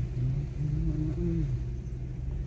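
Low, steady rumble of a car driving slowly, heard from inside the cabin.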